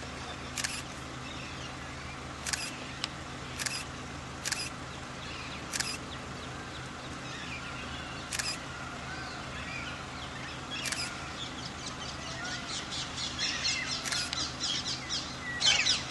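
Camera shutters clicking one at a time, a second or a few seconds apart, over steady low background noise. Bird calls grow busier in the last few seconds.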